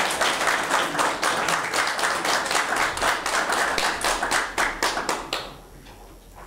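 Audience applauding, a dense patter of many hands clapping that thins out and stops a little over five seconds in.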